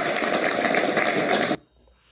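A group of people applauding, a dense patter of clapping that cuts off abruptly about one and a half seconds in, followed by near silence.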